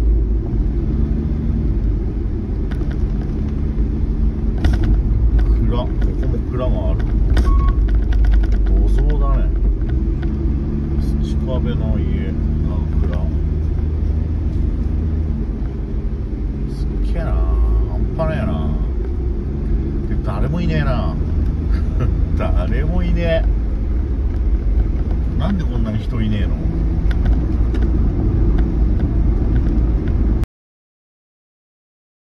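Light cargo van driving on a wet road, heard from inside the cabin: a steady low rumble of engine and tyres with an engine hum underneath.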